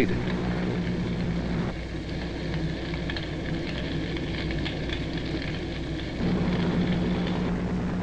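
Steady crackling, rumbling noise of a large fire, with a low steady hum beneath it; the texture thins at about two seconds in and fills out again at about six.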